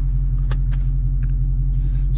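Supercharged 6.2-litre Hemi V8 of a 2022 Dodge Charger SRT Hellcat Redeye idling, a steady low rumble heard inside the cabin. A couple of light clicks come about half a second in.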